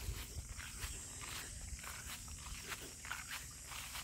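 Faint outdoor ambience: an uneven low rumble of wind on the microphone, with soft footsteps through grass.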